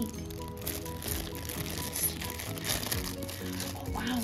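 Thin clear plastic bag crinkling as a small capsule toy figure is handled and unwrapped, over steady background music.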